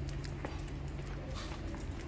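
Footsteps on stone paving, a string of sharp irregular clicks over a steady low hum, with a brief scuff about a second and a half in.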